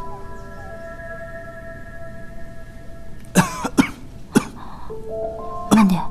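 Background score of slow held notes, with a person coughing about four times in the second half, the last cough the longest.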